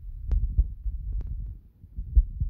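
Low, uneven thumping with three short sharp clicks: handling noise from fingers pressing and tapping on a smartphone's touchscreen.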